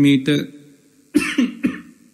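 A man's speech breaks off, and about a second in he gives a short cough.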